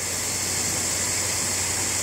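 Steady hiss with a low, even hum from an amplified stage sound system during a pause in the speech.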